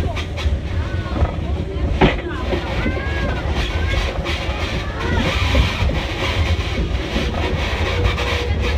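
A steam-hauled passenger train running along the track, a steady low rumble heard from the car just behind the locomotive, with people's voices over it and a single sharp click about two seconds in.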